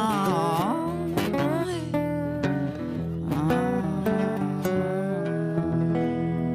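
Acoustic guitar and a lap-played resonator guitar with a slide, the slide bending notes up and down between plucked notes. The music settles on a held, ringing chord near the end.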